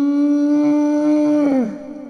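A single long howl held on one pitch that creeps slowly upward, then bends down and trails off near the end before cutting off suddenly.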